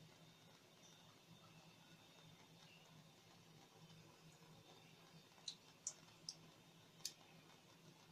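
Near silence: a faint steady low hum, with four brief faint clicks in the second half.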